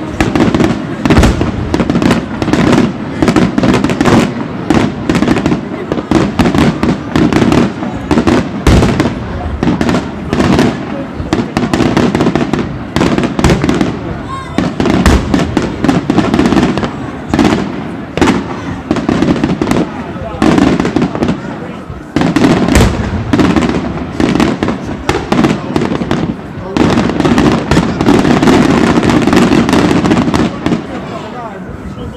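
Daytime aerial fireworks: a dense, unbroken barrage of shell bangs and crackling, several reports a second, easing briefly a little past twenty seconds in and heaviest near the end.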